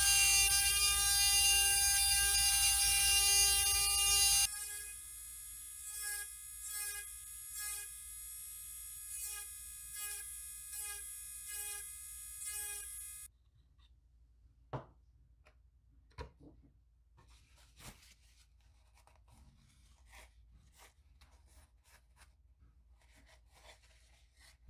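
Electric rotary carving handpiece running at high speed with a steady whine as its bit grinds the wood of a small carved lure. It is loud for the first few seconds, then quieter with short pulses about once a second as the bit is worked over the wood in strokes. It stops abruptly about 13 seconds in, leaving only faint clicks from handling.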